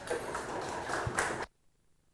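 Audience applauding, cutting off abruptly about one and a half seconds in.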